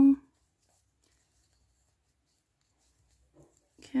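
Near silence: quiet room tone between a woman's words, her voice trailing off just after the start and coming back just before the end.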